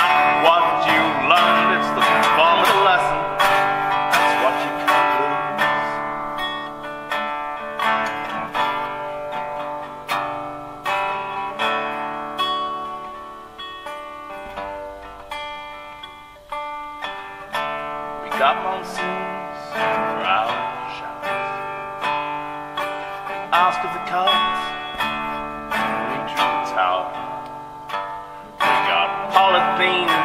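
Acoustic guitar strummed and picked, with a man singing over it in stretches. The playing thins and quietens in the middle, then builds back up.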